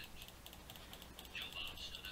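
Faint, rapid clicking at a computer: keys and mouse buttons. A faint murmured voice comes in near the end.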